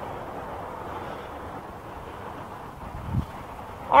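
Steady rushing outdoor noise, wind on the microphone, with a single low thump about three seconds in.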